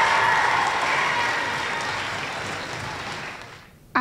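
Audience applauding, the clapping fading away and dying out just before the end.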